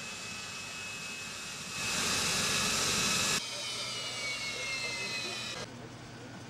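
Jet engines of a Yakovlev Yak-40 airliner running on the ground. A high whine slowly falls in pitch, with a louder rush of jet noise for about a second and a half in the middle. The sound cuts off abruptly twice.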